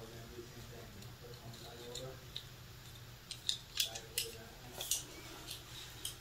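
A quick run of sharp clicks and light crinkles from small hard objects being handled, mostly in the second half. Faint, muffled voices are heard near the start.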